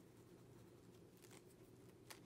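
Near silence, with a faint scratch of a Caran d'Ache Neocolor water-soluble wax pastel rubbed on a collaged paper journal page a little over a second in.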